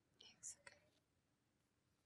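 Near silence: room tone, with a faint short hiss and a tiny click about half a second in.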